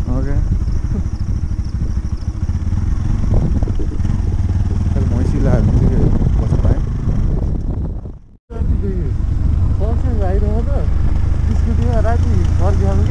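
Motorcycle being ridden on a rough dirt road, its engine and wind rumbling heavily at the helmet-mounted microphone. The sound cuts out abruptly for a moment about eight seconds in, then the rumble resumes.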